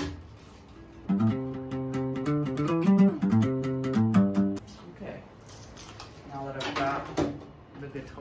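Acoustic guitar played unamplified: a passage of notes and chords starting about a second in and stopping after about three and a half seconds. A short stretch of voice follows near the end.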